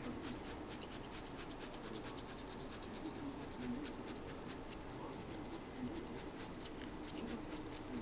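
A toothbrush scrubbing a Maine Coon cat's teeth: bristles scratching and clicking against the teeth in quick, irregular strokes.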